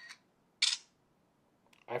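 Electronic camera shutter sounds from the two smartphones, an iPhone 3GS and a Motorola Droid, as both take a picture: a short double click at the start, then a louder, sharper shutter click about two thirds of a second in.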